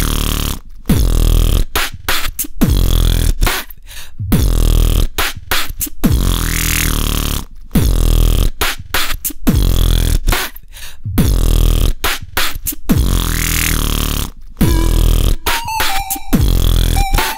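Electronic music in a dubstep style: heavy bass and synth phrases with rising sweeps repeat about every two seconds, broken by short abrupt cut-offs.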